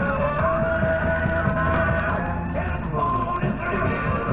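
Rock music with singing, played back from an 8-track cartridge on a Panasonic RS-853 8-track player. The tape is in very poor condition.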